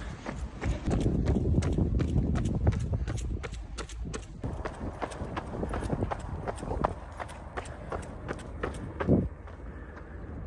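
Running footsteps on hard pavement, an even beat of about three strides a second, picked up by a handheld phone. A low rumble sits under the first few seconds.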